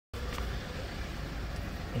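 Steady low vehicle rumble with no distinct events.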